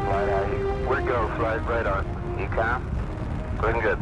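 Saturn V rocket at liftoff, a steady low rumble under mission-control radio voices. Held music notes fade out in the first second.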